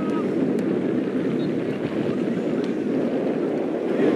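Steady wind rush on the microphone over open-air field ambience, with faint distant voices of players and spectators.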